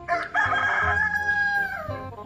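A rooster crowing once: one long call that holds steady and falls off in pitch near the end.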